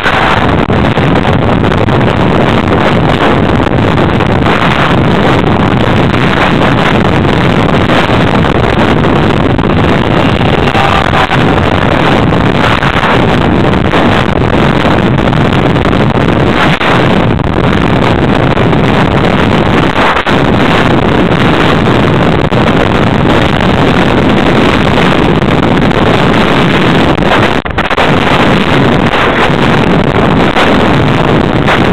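Continuous heavy wind rush and rattle on an onboard camera's microphone as it moves fast down a rough dirt trail, with no engine note.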